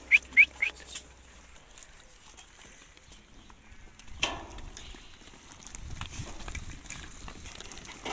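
A flock of sheep milling about in a pen. Three quick, high, rising chirps right at the start are the loudest sound, with a short, louder sound about four seconds in and a low rumble near the end.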